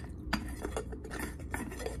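Fingernails tapping fast on a glass jar candle: a quick, irregular run of sharp clicks.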